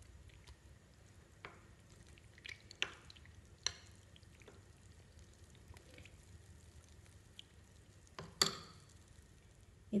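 Metal spoon stirring custard powder into cold milk in a small glass bowl, giving a few light clinks and scrapes against the glass, with a sharper pair of clinks about eight seconds in.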